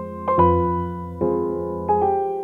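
Background piano music: soft chords and notes struck every half second to a second, each left to ring and fade.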